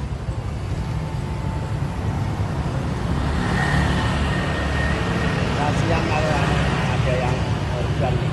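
Street traffic: cars and motorcycles passing with a steady engine and tyre rumble that grows louder after about three seconds.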